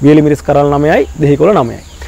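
A man's voice speaking, with a steady faint high whine of insects behind it.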